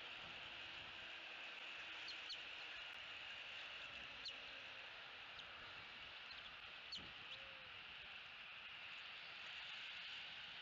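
Faint, short high chirps from bald eaglets being fed, about six scattered through, over a steady high hiss.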